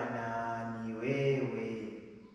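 A man singing a slow worship song in Swahili, unaccompanied, in long held notes; the phrase fades away near the end.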